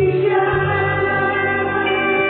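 Women's voices singing a gospel worship song together, with long held notes, over an acoustic guitar and band accompaniment.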